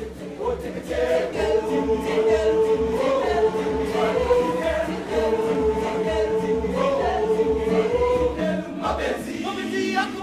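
A boys' choir singing a cappella in harmony. Long held chords move in small steps over a steady rhythmic low pulse.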